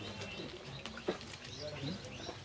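Quiet outdoor background: a bird calling, with faint murmur of voices in a crowd and a small click about a second in.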